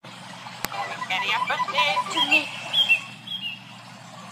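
Voices with a few short, high chirps in the second half, over a steady background hum.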